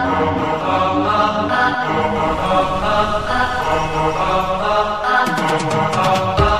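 Background music: a chanted, mantra-like vocal over sustained accompaniment, with drum beats coming in near the end.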